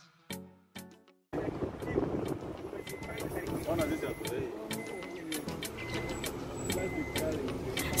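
Background music ends about a second in and cuts abruptly to outdoor sound: faint voices over a steady background noise, with scattered light clicks and a faint, high, repeated short tone.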